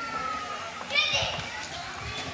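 Murmur of a hall audience with children, and one child's short high-pitched shout about a second in.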